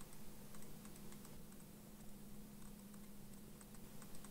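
Faint, scattered clicks from computer input at a desk, over a steady low hum.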